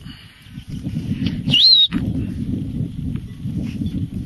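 A single loud, high whistle about a second and a half in, rising sharply and then wavering before cutting off, over a steady low rumble of wind on the microphone.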